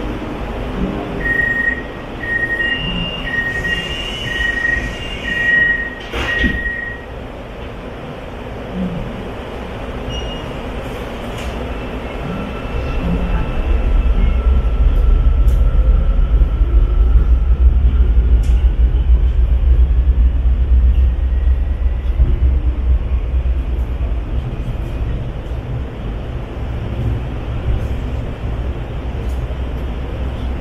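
Hyundai Rotem metro train at a station: a string of door-warning beeps for about five seconds, then the doors close with a thud. From about twelve seconds in, the train pulls away, its low rumble building with a faint rising motor whine.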